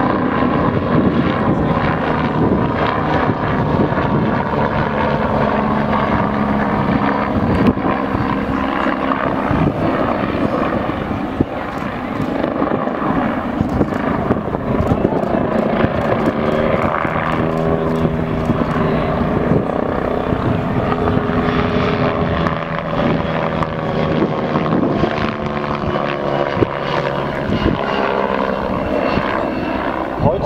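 MBB Bo 105 twin-turbine helicopter flying display manoeuvres overhead. Its rotor and turbines make a loud, steady sound whose pitch shifts now and then as it climbs and turns.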